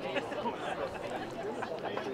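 Distant chatter and calls from several voices of players and sideline onlookers, none close or clear.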